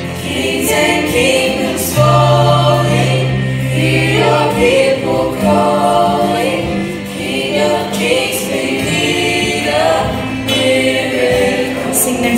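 Youth choir singing a gospel song with a lead voice, backed by music with long held bass notes.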